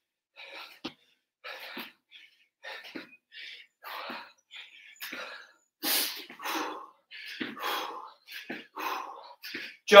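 A man breathing hard from exertion mid-workout: a quick series of short, forceful breaths, about one and a half a second, growing a little louder after about six seconds.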